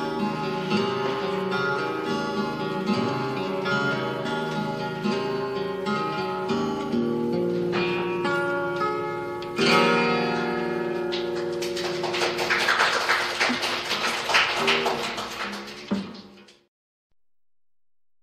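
Acoustic guitars playing an instrumental passage with no singing, the strumming growing busier near the end. The music then dies away and stops about sixteen seconds in.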